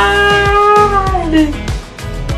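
A woman's long, high-pitched cry of laughter, held steady for about a second and a half and then sliding down in pitch, over background music with a steady beat.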